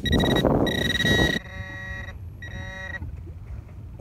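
A metal-detecting pinpointer pushed into beach sand sounds a steady high beep for about a second and a half, with a brief break, over the scrape of sand. Two shorter, buzzier beeps follow, signalling a metal target in the sand.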